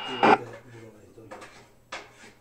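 K-PO DX 5000 CB radio's speaker between transmissions: a short burst of static just after the start as a station drops off, then a faint, distant voice, and a click shortly before the end.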